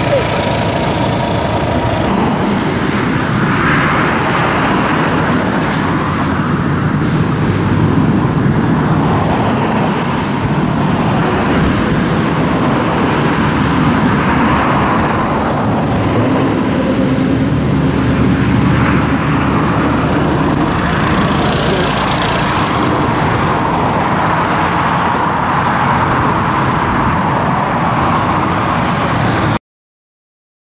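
Vespa 946 RED scooter's single-cylinder engine running as it rides around carrying two people, under a heavy low rumble. The sound cuts off suddenly near the end.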